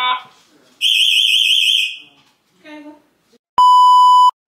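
A home security alarm system sounds a fast-warbling high siren tone for about a second. Near the end a steady, loud test-pattern beep cuts in and then stops abruptly.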